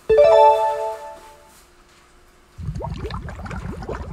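Quiz-video sound effects: a bright musical chime of a few notes stepping upward, sudden at the start and ringing out over about a second. From about two and a half seconds in, a fast run of short rising chirps over a low rumble leads into the next question.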